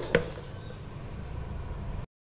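Quiet room noise with one light plastic click just after the start, as the stick blender's motor unit is handled on its chopper bowl. The blender is not running.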